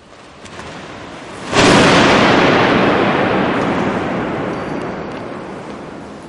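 A parachute canopy snapping open inside a huge domed basilica: a sudden loud burst about a second and a half in, followed by a long echo that dies away slowly over several seconds.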